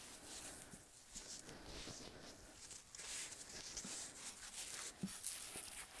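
Faint soft rustling and rubbing of a microfiber cloth being pulled tight and rolled around a cardboard tube, with a few light taps.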